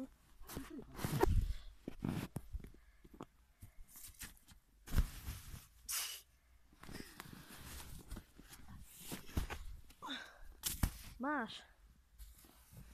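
Irregular crunches and thuds of packed snow being broken and trampled as a person throws himself into a heap of igloo snow, mixed with rustling from the phone being handled. A brief voice sounds near the end.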